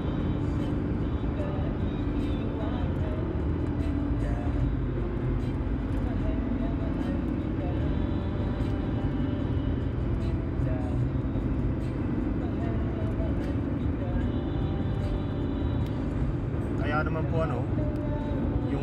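Steady road and engine noise heard inside a car cruising at highway speed.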